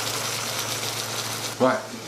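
Chicken pieces sizzling in olive oil in a frying pan: a steady frying hiss that runs under a single spoken word near the end.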